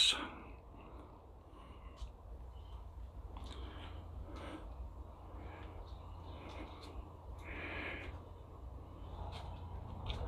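Quiet background with a steady low hum, a few faint scattered ticks, and faint higher-pitched sounds about four and a half seconds in and again near eight seconds.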